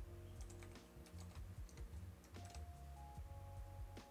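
Quiet typing on a computer keyboard: scattered key clicks as a password is entered, over faint background music with held notes.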